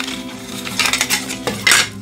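Hard plastic model-kit parts, the two halves of a snap-together lighthouse tower, clicking and rubbing against each other as they are handled and fitted together, with two short louder scrapes, near the middle and near the end.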